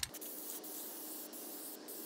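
Aerosol can of gold spray paint spraying in one steady hiss.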